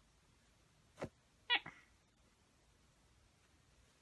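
A short knock, then about half a second later a single brief high-pitched animal call, the loudest sound here.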